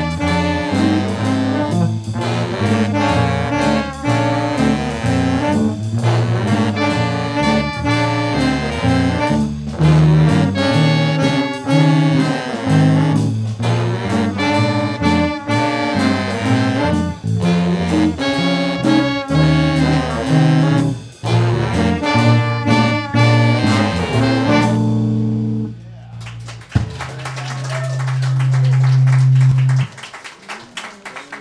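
Student jazz ensemble playing a tune that ends about 25 seconds in; after a short gap, one sharp hit, then a single long low final note that swells louder.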